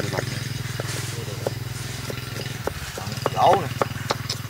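Cleaver blade knocking on a round wooden chopping board as peeled garlic is chopped: a string of sharp, irregular knocks about one a second. A steady low hum, like a distant engine, runs underneath.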